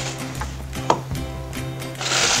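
Background music with steady held notes, over a few light knocks of oranges and kitchen things being set down on a tiled counter, the sharpest knock about a second in.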